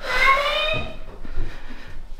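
A short wordless vocal sound at the start, pitched and sliding, followed by a few soft low thumps.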